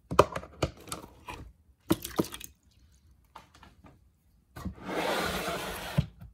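Handling noise: a run of sharp clicks and knocks, then a pause, then about a second and a half of loud rustling and scraping near the end as a hand brushes close over the phone's microphone.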